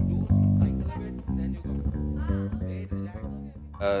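A live band playing, with electric guitar over a bass guitar's steady, repeating low notes. A man's voice begins just before the end.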